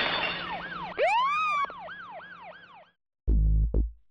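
A siren sound effect yelping with a quick up-and-down sweep about three times a second, with a bigger rising swoop about a second in, fading away by about three seconds. Near the end come two heavy low bass hits as music begins.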